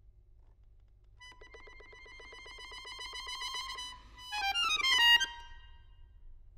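Chromatic button accordion playing a single high note, pulsed rapidly and growing louder. About four seconds in it breaks into a quick falling run of notes, the loudest moment, cut off sharply just after five seconds.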